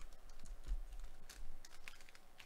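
Desk handling noise: a scatter of irregular light clicks and taps with a few low bumps.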